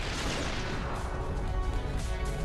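TV show's transition sting into a round-title card: a loud, noisy swish with heavy bass, giving way about a second in to a music jingle with steady held notes.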